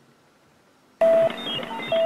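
Near silence, then about a second in a burst of electronic beeps starts: short tones jumping between pitches, one held tone recurring, over a rapid low ticking pulse, like a computer processing data.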